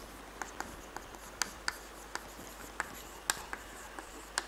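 Chalk writing on a blackboard: about nine sharp, irregularly spaced taps and clicks of the chalk as letters are written, the strongest a little after three seconds in.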